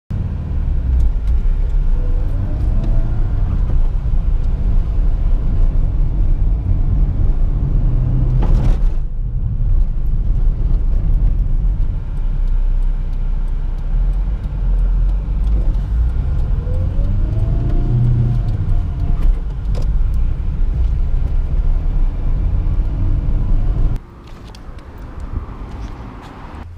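Car cabin sound while driving: heavy, steady low rumble of engine and road, with the engine note climbing twice as the car accelerates and a single sharp thump about nine seconds in. Near the end it drops suddenly to much quieter street sound.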